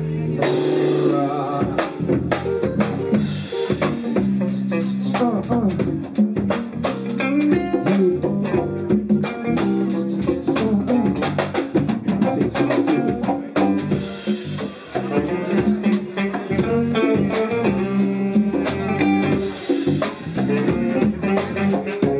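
Live band jamming: a drum kit keeping a busy beat under guitar and bass lines.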